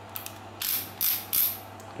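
Anex stubby ratcheting screwdriver's ratchet clicking as the handle is turned back and forth, in three short runs of clicks about half a second apart, just after being switched to reverse.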